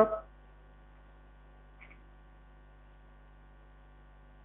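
Steady electrical mains hum, a low buzz made of several fixed tones, with a faint short chirp about two seconds in.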